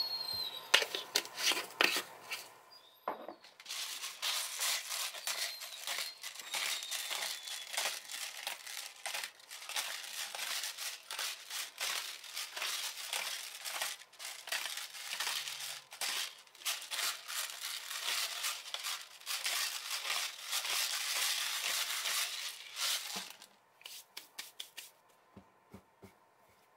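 Twist-top pepper grinder crunching black peppercorns: a long, dense run of rapid gritty clicks for about twenty seconds, stopping a few seconds before the end, followed by a few scattered clicks.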